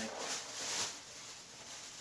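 Plastic grocery bag rustling as a litter box's plastic waste drawer is emptied into it, loudest in the first second and then fading.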